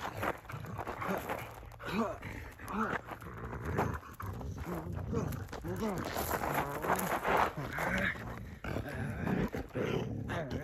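Siberian husky vocalizing during rough play-fighting: a string of short whining, grumbling calls that rise and fall in pitch, one after another.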